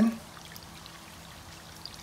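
Water pouring in a steady stream from a three-gallon plastic jug into a water-dispenser crock, splashing into the water already in it.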